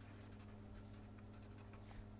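Faint strokes of a marker pen writing on paper, a quick irregular run of soft scratches, over a low steady electrical hum.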